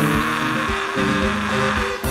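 Live konpa band music: sustained bass notes under a steady hiss-like wash, with no singing.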